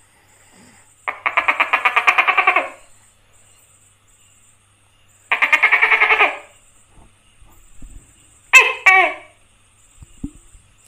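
Tokay gecko calling: two loud rattling calls with rapid pulses, the first about a second and a half long and the second about a second, then a two-syllable "to-kay" call with falling pitch near the end.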